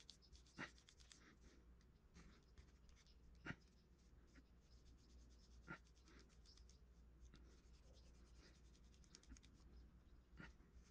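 Faint scratching of a wire loop sculpting tool working texture into a small clay feather, with three light taps of tools on a wooden board.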